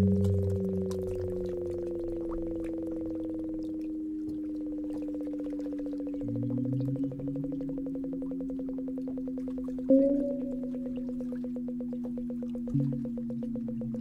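Synthesized sine tones from the Sonic Kayak's sonification system, sounding live sensor readings. A steady tone holds while a second tone slides slowly down in pitch. Lower tones switch on and step in pitch, with sharper note onsets about ten seconds in and near the end, all over a rapid, even pulsing.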